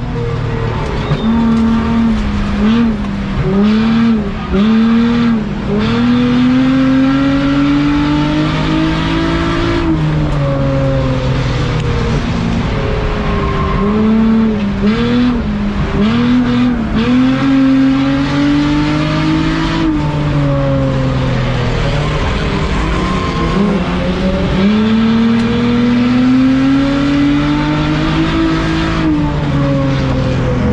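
On-board sound of an enduro race car's engine at racing speed, heard inside the stripped-out cabin. The pitch climbs steadily along the straights and drops off into the turns, several times over, with short choppy dips in pitch a few seconds in and again about halfway.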